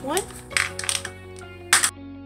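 Small polymer clay charms with little metal eye pins clinking against each other in a hand: a few light clicks, then a sharper clink near the end, over soft background music.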